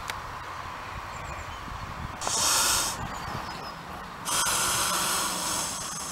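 Domestic goose hissing twice, open-beaked: a short hiss about two seconds in and a longer one from about four seconds in. It is an aggressive threat display.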